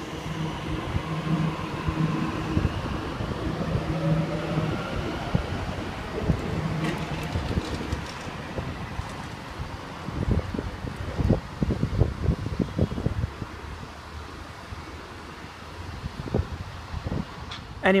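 Waratah electric train pulling away, its traction motors whining in tones that rise in pitch over the first several seconds over a steady hum. Wind buffets the microphone in gusts, heaviest in the second half.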